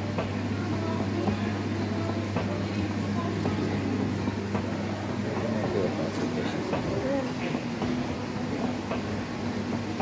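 Indoor shop background: a steady low hum with faint voices chattering in the background.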